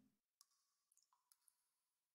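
Near silence, with a few barely audible clicks.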